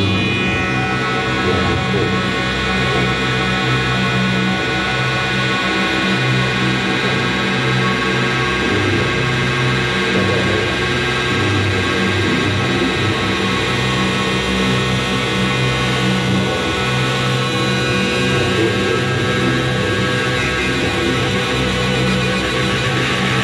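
Live experimental drone music from electric guitar and electronics: a dense, loud, continuous wash of many held tones over a low drone that pulses on and off irregularly.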